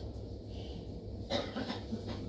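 A single short cough about one and a half seconds in, over a steady low hum.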